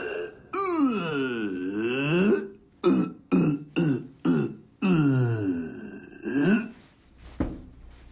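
A man making wordless vocal sounds: one long sound whose pitch slides down and back up, then several short ones, then a long falling one.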